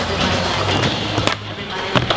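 Skateboard wheels rolling over concrete with a steady rumble, going quieter for a moment, then a sharp clack near the end as the board strikes the ramp's metal coping.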